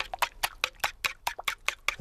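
A fork beating eggs and cream in a bowl, its tines clicking against the bowl in a quick, even rhythm of about five strokes a second.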